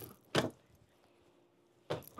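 Carry handle of a hard-shell polycarbonate luggage trunk clacking against the shell as it is gripped: two short knocks about half a second apart near the start, and another just before the end.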